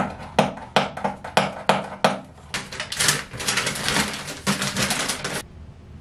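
Cardboard hair-dye box being opened and its paper instruction leaflet pulled out and unfolded. First come a string of sharp clicks and snaps from the box, then a dense papery crinkling for a couple of seconds from about halfway, and this stops shortly before the end.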